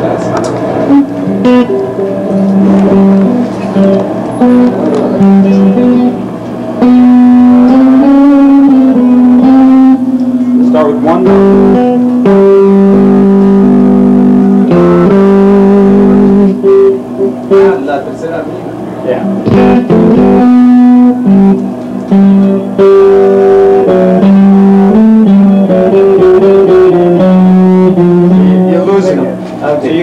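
Electric guitar playing a slow melody of long held notes, with a voice singing along a harmony a third from the guitar line.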